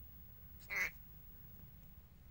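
A lorikeet gives a single short squawk about a second in, while it guards its toy.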